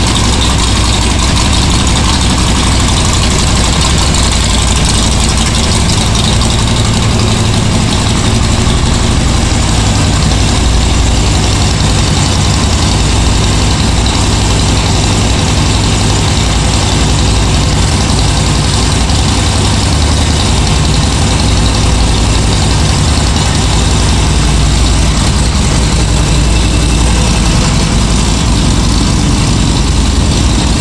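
2012 Harley-Davidson Seventy-Two Sportster's 1200 cc air-cooled V-twin idling steadily through its stock exhaust, echoing in a concrete parking garage.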